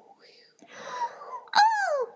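A whooshing gust of wind, then, about one and a half seconds in, a high-pitched cartoon voice wails, sliding down in pitch.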